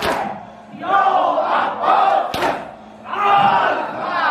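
A crowd of men chanting a mourning lament together in short repeated phrases, with two sharp slaps of sineh-zani chest-beating: one at the start and one about two and a half seconds in.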